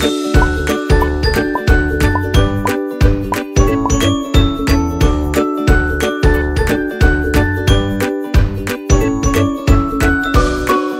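Background music with a steady beat about twice a second and a melody of short, bright struck notes over sustained chords.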